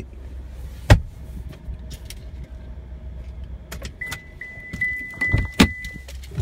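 Handling knocks and clicks inside a pickup truck's cab over a steady low hum, with a sharp knock about a second in. About four seconds in, a rapid series of high electronic beeps starts, two or three a second, like a vehicle warning chime.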